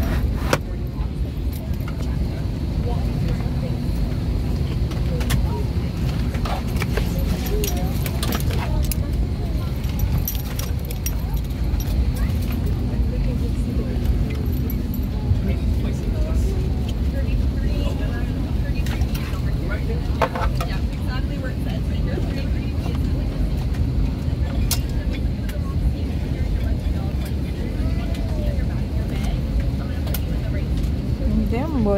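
Steady low rumble of an airliner cabin at the gate before take-off, with faint voices of other passengers and scattered clicks and knocks from people settling in.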